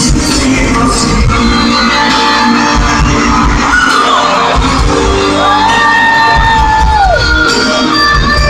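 A live Latin pop band and male singer in a large hall, heard from within the audience, with shouts from the crowd. A long held note rises in about five seconds in and falls away about two seconds later.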